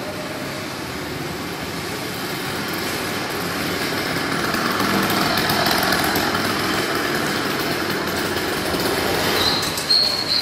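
Small engine of a motorized bicycle running as the bike rides past, growing louder toward the middle and easing off afterwards. A short high squeal comes near the end.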